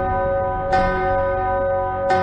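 A bell tolling in dark title music: one stroke about two-thirds of a second in, ringing on with several steady tones until the next stroke.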